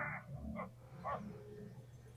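A man's gruff growling vocalization, "arr, ar, ar", from a film soundtrack, heard faintly in a few short bursts.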